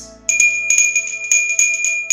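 Small hand bell ringing quickly, about eight strikes in under two seconds, over soft background music.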